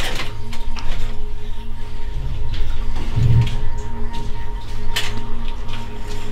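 A low steady drone with a few held tones, most like ambient background music, with a few irregular footsteps on the tunnel's debris-strewn floor.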